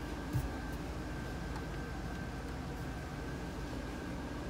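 GMC Suburban's engine idling steadily, heard from inside the cabin with a faint even hiss of air. One light thump comes about a third of a second in.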